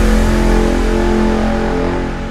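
Dubstep music near the end of the track: a heavy, held bass and synth chord with a fast growling pulse, slowly fading out.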